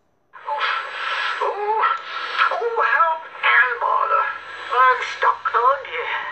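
Cartoon characters' voices from the film soundtrack, starting about half a second in and running on with rising and falling exclamations, played through a computer's speakers and picked up off the screen, so thin and without low end.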